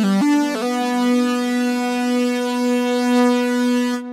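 Modal Electronics Cobalt8X virtual-analogue synthesizer played from its keyboard: a few quick notes, then one held note sustained for about three seconds.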